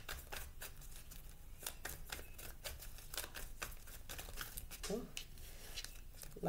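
A deck of tarot cards being shuffled by hand: a quick, irregular run of light clicks as the cards slide and riffle against each other.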